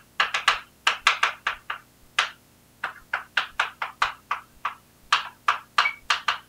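Chalk writing on a blackboard: a quick, irregular run of short tapping and scratching strokes as letters are written out, with a brief pause about halfway through.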